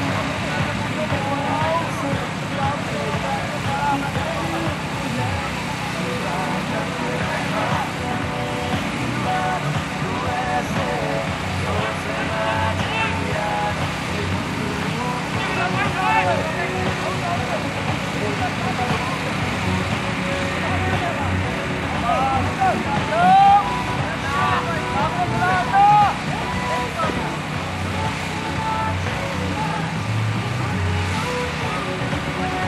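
Indistinct voices of cricket players and onlookers talking and calling out across an open field, over a steady low hum, with two louder calls near the end.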